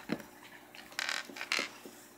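Small plastic toy figures and pieces handled and moved on a wooden tabletop: a few brief scrapes and taps, the longest about a second in.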